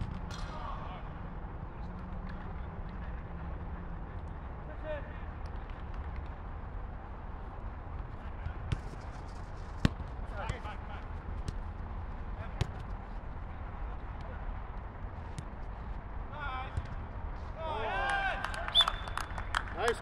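Football being kicked on an artificial pitch, a few sharp thuds with the loudest about ten seconds in, over a steady low background hum. Players call out from across the pitch now and then, several voices shouting together near the end.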